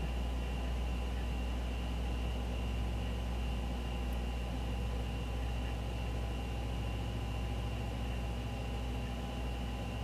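Steady low hum with light hiss and a faint high whine, unchanging throughout: the background noise of the recording room and equipment.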